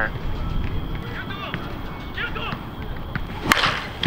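Anarchy Fenrir slowpitch softball bat hitting a softball: a single sharp crack about three and a half seconds in, over a low steady background.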